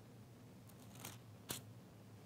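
Faint rustle of paper being handled at a lectern, then a single sharp click about one and a half seconds in, over a low steady hum.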